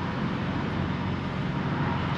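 Steady low rumble of truck and road traffic engines, with a hiss of noise over it and no single vehicle standing out.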